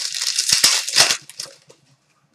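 Crinkling of plastic card packaging handled by hand: a dense crackle for about a second and a quarter, then a few small clicks.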